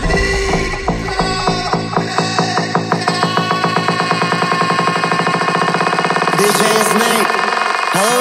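Electronic dance music in an instrumental stretch without vocals. A repeated synth note pulses faster and faster through the stretch, and the deep bass drops away about two seconds in.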